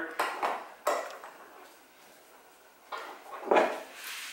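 Handling clatter as a 3D-printed plastic part is clamped into a metal bench vise: a few sharp knocks and clinks in the first second, a short lull, then more knocks near the end as a hammer is taken up.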